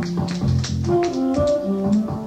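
Live band music: a held bass line under light, regular percussion taps, with a short run of higher melodic notes about a second in.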